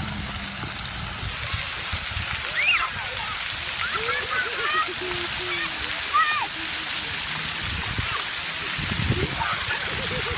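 Splash-pad ground jets spraying and splattering water onto wet pavement with a steady hiss, with children's high calls and squeals rising and falling over it.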